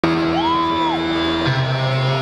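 Live band music heard through a concert sound system, with sustained held notes and a bass note that changes about halfway through. A fan whoops briefly near the start.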